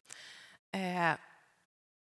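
A woman's breath through a headset microphone: a breathy intake, then a short voiced hesitation sound that falls in pitch and fades, cutting to dead silence near the end.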